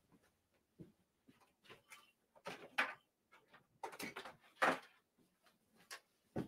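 Scattered faint knocks, bumps and rustling of objects being handled and moved in a room, with the strongest knocks about two and a half, four and four and a half seconds in.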